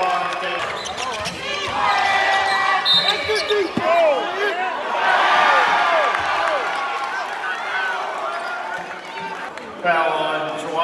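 Basketball game sounds on a hardwood court: a string of short sneaker squeaks in the middle, with a basketball bouncing and voices around the gym.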